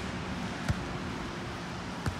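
A single sharp slap of a hand striking a volleyball, about two-thirds of a second in, over a steady outdoor hiss.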